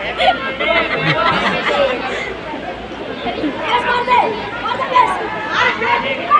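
Many people talking at once: indistinct chatter of several voices.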